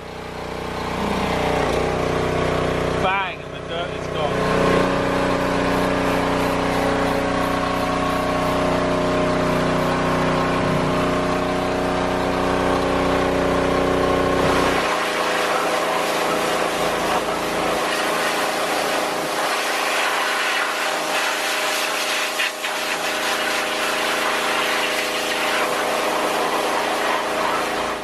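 Pressure washer running steadily, its motor and pump humming under the hiss of the water jet cleaning a degreased motorcycle engine. It cuts out briefly about three seconds in, then runs on, and its low hum drops away about halfway through.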